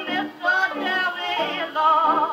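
A 1920s jazz band record played on a wind-up acoustic gramophone from a shellac 78 rpm Brunswick disc. The lead melody line wavers with heavy vibrato over the band.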